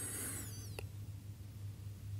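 A pause with a low steady hum, and a faint high chirp falling in pitch during the first second.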